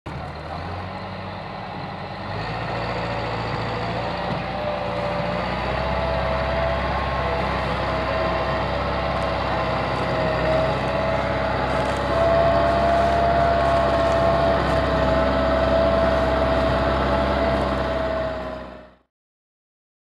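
Massey Ferguson 385 tractor's diesel engine working hard at full power, pulling a very heavily loaded sugarcane trolley, with a steady whine over the engine note. The sound grows louder about two seconds in and again about halfway through, then fades out shortly before the end.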